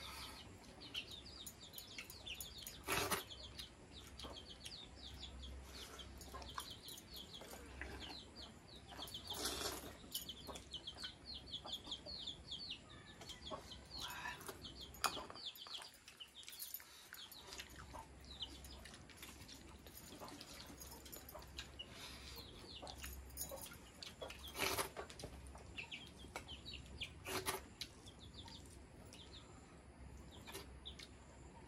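Faint bird sounds: runs of quick, high chirps and a domestic chicken clucking, with a few short, louder noises now and then.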